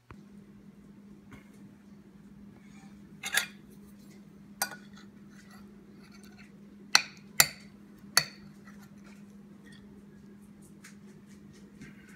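A metal spoon clinking against a ceramic bowl: a few separate sharp clinks, the clearest three about two-thirds of the way through, over a steady low hum.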